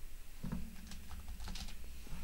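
Typing on a computer keyboard: a short, irregular run of keystrokes while a terminal command is edited.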